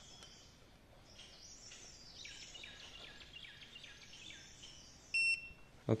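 Faint birdsong, a run of chirping notes, then a little after five seconds in one short electronic beep from the rebar scanner as it registers a bar under the concrete surface.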